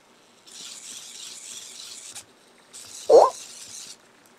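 EMO desktop robot's small leg motors whirring in two spells of about a second and a half as it walks to the table edge and turns away from it. A short rising chirp from the robot comes about three seconds in and is the loudest sound.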